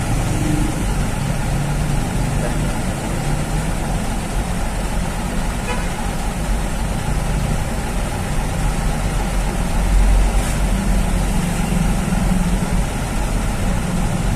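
Vehicle engine running at low speed, heard from inside the cab while it creeps in stop-and-go traffic: a steady low rumble with surrounding traffic noise, swelling briefly about ten seconds in.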